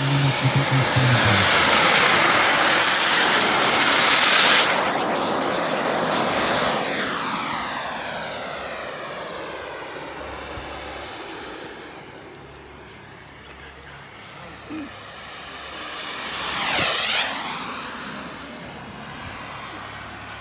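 A radio-controlled model jet takes off down the runway and climbs away, its engine loud at first and fading slowly as it gets farther off. About 17 seconds in it makes a fast pass, the sound swelling sharply and dropping away again within a couple of seconds.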